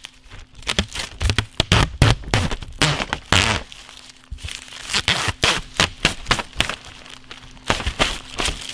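Protective plastic film being peeled off a sheet of clear acrylic: rapid, irregular sharp crackling and snapping as the film pulls away and crumples, a little jarring.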